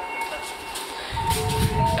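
Low rumbling handling noise in the second half as the camera is swung along the car roof, over faint steady background tones.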